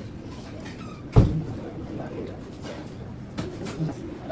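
A single dull thump about a second in, over low background noise.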